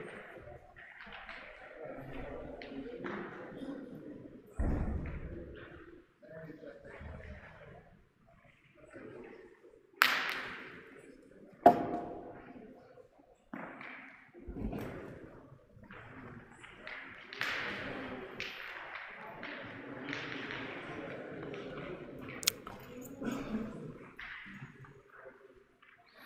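Indistinct voices of players and onlookers in a large hall, with a few sharp metallic clacks of steel pétanque boules striking each other, the loudest just before twelve seconds in with a brief ring. There are also a couple of dull thuds.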